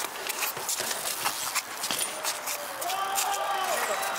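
A BMX bike clattering over paving, with a run of sharp clicks and knocks in the first two seconds. From about three seconds in, several people whoop and shout, cheering a landed trick.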